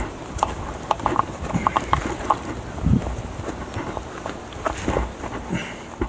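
Irregular knocks, taps and scuffs of a climber's hands and feet gripping and moving on bare rock, with a heavier thump about three seconds in.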